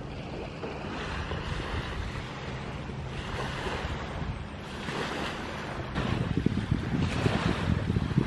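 Small lake waves washing onto a sandy shore in gentle swells, with wind on the microphone that buffets harder in the last couple of seconds.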